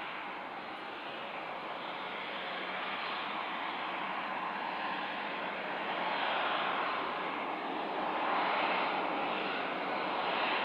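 Turbofan engines of an Embraer E190 airliner taxiing, a steady rushing jet noise that slowly grows louder and is loudest near the end.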